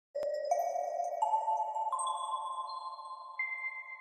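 Intro jingle of clear electronic chime tones. Five notes come in one after another, each higher than the last and held ringing, building into a sustained chord that slowly fades.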